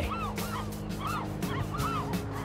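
Seabirds calling: short cries that rise and fall, about five in two seconds. Under them, background music holds steady notes.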